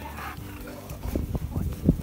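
A husky-malamute vocalizing in a run of short, low sounds, loudest near the end.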